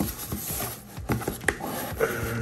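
Cardboard shipping box being opened by hand: flaps and packing rubbing and scraping, with a couple of sharp clicks.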